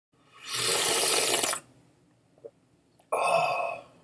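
A person slurping hot coffee from a mug: one long noisy slurp about half a second in, then a second, shorter breathy slurp or exhale near the end.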